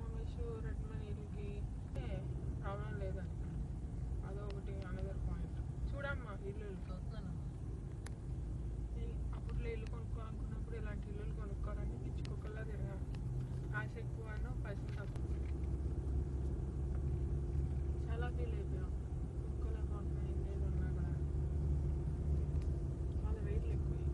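A car driving, heard from inside the cabin: a steady low road and engine rumble that grows louder a little past the middle. Quiet voices talk over it for much of the time.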